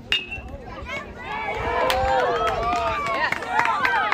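A metal baseball bat rings with a sharp ping as it hits the ball. Players and spectators then shout and yell, louder and louder, with a few sharp smacks among the voices.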